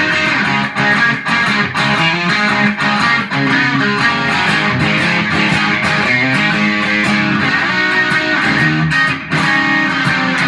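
Electric guitar, an Epiphone Les Paul Custom on its Gibson 500T bridge humbucker, played through a Fender Mustang amp with light tube-screamer-style overdrive. It plays a steady run of picked notes and strummed chords.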